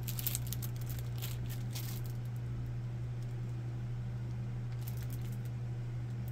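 Soft crinkling of a clear plastic doll bag being handled, a few light crackles in the first two seconds and again about five seconds in, over a steady low hum.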